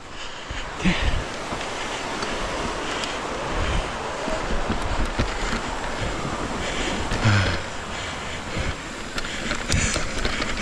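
Wind rushing over a helmet-mounted action camera's microphone as a mountain bike rolls fast down a dirt forest trail. Tyre noise on the dirt and frequent rattling knocks from the bike run under it.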